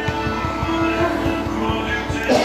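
Music with a quick, steady beat under held notes.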